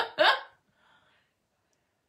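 A woman's short laugh, two quick voiced bursts with a rising pitch. About half a second in it stops, and near silence follows.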